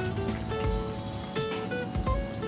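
Background music of short held notes playing over the steady sizzle of potato pieces frying in hot oil in a steel kadai.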